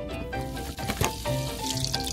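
Butter sizzling in a hot rectangular egg-roll pan on a gas burner, the hiss growing louder near the end; the pan is hot enough that the butter is browning fast. Background music plays throughout.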